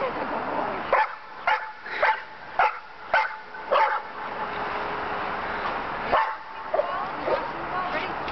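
Dog barking in play: a quick run of about six short barks roughly half a second apart, a pause, then three more.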